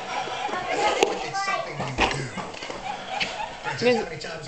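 Indistinct background voices with no clear words, with a sharp click about a second in.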